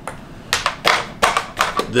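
Plastic climbing helmets being handled: a quick run of irregular sharp clicks and knocks from the hard shells, harness and buckles, starting about half a second in.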